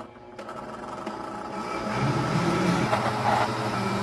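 Countertop blender motor starting about half a second in and running steadily, getting louder over the first two seconds, as it blends a thick mix of milk and doce de leite.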